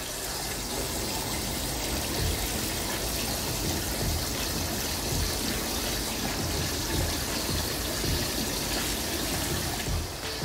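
Head-spa waterfall arch pouring many thin streams of water onto the scalp and hair and splashing into the filled basin below: a steady rush of running water with a few soft splashes.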